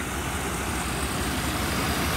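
1993 GMC Suburban's V8 engine idling steadily, heard from the open engine bay.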